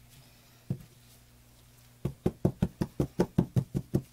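A plastic soap mold knocked down on the tabletop: one knock, then about two seconds in a quick run of about a dozen knocks, roughly five a second, settling the freshly poured soap batter.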